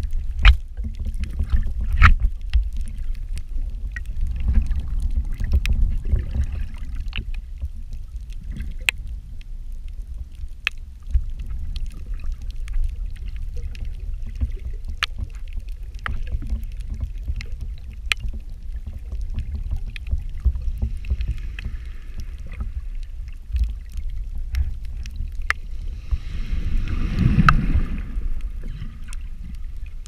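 Shallow-water surge heard underwater: a steady low rumble of moving water with scattered sharp clicks, swelling into a louder rush near the end as a wave breaks at the surface overhead.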